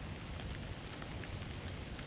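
Steady outdoor background noise in bare winter woods: an even hiss over a low, unsteady rumble, with a few faint ticks.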